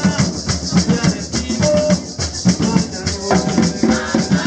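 Puerto Rican bomba played live on barril drums, a steady drum rhythm under a fast, even rattle of a maraca.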